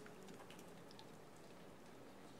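Near silence: faint steady room tone with light hiss.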